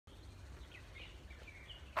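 Small birds chirping faintly, a handful of short calls, over a steady low rumble.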